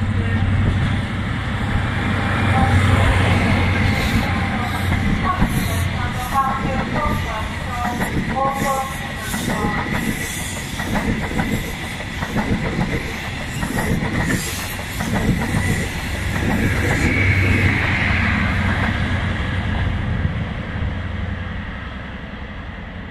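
InterCity 125 High Speed Train running through a station at speed. The leading Class 43 diesel power car's engine drone passes first, then the coaches' wheels clatter over the rail joints, then the rear power car's engine passes and fades away.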